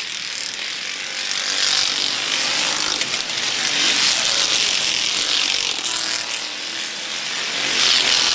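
A field of stock cars racing past at full throttle on the final lap, many engines running together as one dense, raspy engine noise. It swells over the first few seconds, eases a little, and builds again near the end as the cars come by.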